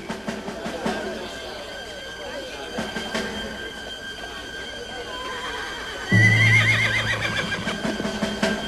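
Murmur of a crowd of onlookers with a few scattered knocks; about six seconds in, a horse whinnies loudly, its call wavering up and down for about a second.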